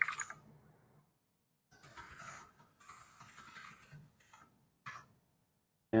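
Quiet typing on a computer keyboard: two short runs of keystrokes, then two single key taps in the last second and a half.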